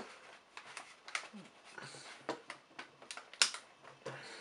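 Scattered light clicks and handling rustles, with one sharper click a little before the end as the room light is switched off.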